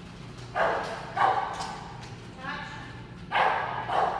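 Bulldog barking a few times in short bursts.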